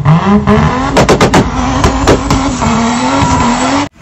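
A racing car engine revving: its pitch climbs quickly and then holds high and steady, with a short burst of harsh noise about a second in.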